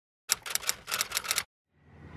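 Typewriter sound effect: a quick, uneven run of about ten key clicks lasting about a second, stopping abruptly.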